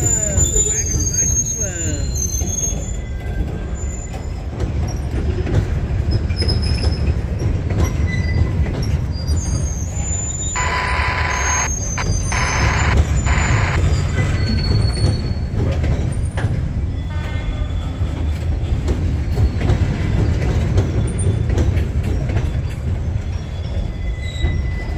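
Freight cars of a CSX welded-rail train rolling slowly past in reverse: a steady low rumble of wheels on rail with scattered thin squeals. Near the middle there is a louder high-pitched screech lasting about three seconds.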